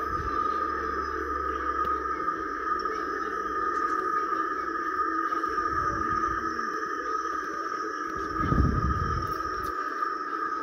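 Several videos playing at once through laptop speakers, blending into a steady, droning mix of music and sound-effect audio. A low rumble swells about eight and a half seconds in.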